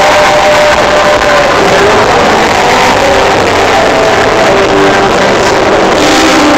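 Live pop-rock band playing loud through a concert PA, heard from among the audience.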